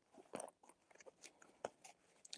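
Near silence broken by a few faint clicks and rustles as a wallet is handled, the sharpest click about one and a half seconds in.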